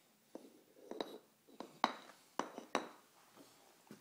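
Wooden toy train track pieces knocking together as a child handles them: about six sharp clacks at uneven intervals.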